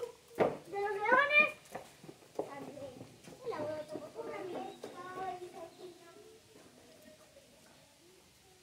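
A child's voice exclaiming with a rising pitch about a second in, followed by other voices chattering that fade out after about six seconds.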